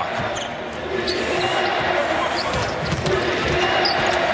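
Live court sound of an NBA basketball game in an arena: a basketball bouncing on the hardwood floor over steady arena background noise.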